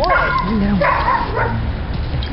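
A six-month-old Labrador retriever puppy gives a few short, high yips and barks in play.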